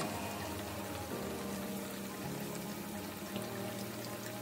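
Vegetable fritters of grated squash and carrot sizzling steadily in hot oil in a pan, with soft background music underneath.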